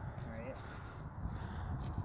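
Low rumble of wind on the microphone, with footsteps on dry dirt and a brief faint voice about half a second in.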